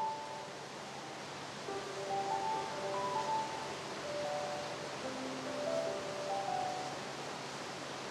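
Soft background music of slow, held notes changing pitch every second or so, over a faint steady hiss.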